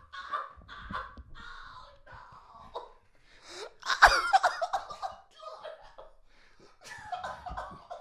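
Several men laughing hard in irregular bursts, the loudest burst about four seconds in.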